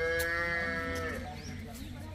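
Cattle mooing: one long, steady call that ends about a second in.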